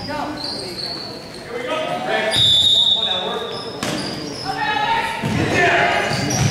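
Basketball game sounds echoing in a gym: the ball bouncing on the hardwood court, short high squeaks of sneakers, and players and spectators calling out.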